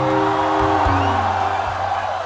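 A live band's final chord rings out and fades, with held notes and a low bass note dying away over about two seconds.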